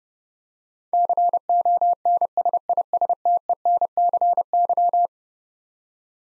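Morse code at 30 words per minute: a single steady beep keyed into short and long pulses, spelling the word "consistency". It starts about a second in and lasts about four seconds.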